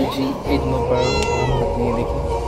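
A tabby cat meows once, about a second in, a single call lasting about half a second, over background music.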